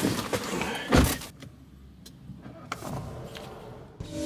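A car door shut from inside with one heavy thud about a second in, after the rustle of someone settling into the driver's seat; then the closed cabin goes quiet apart from a few faint clicks.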